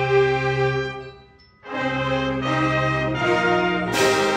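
Concert band playing sustained, brass-led chords. The sound dies away about a second in for a short rest, then the full band comes back in and moves to a new chord.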